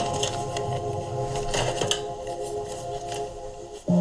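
Film soundtrack: a sustained drone of several steady tones with scattered short mechanical clicks over it, switching abruptly to a single lower steady hum just before the end.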